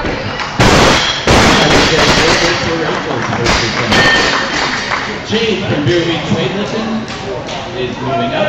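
A loaded Olympic barbell with bumper plates dropped from overhead onto a wooden lifting platform: two heavy thuds less than a second apart, then a few lighter metal clanks as the bar and plates are handled.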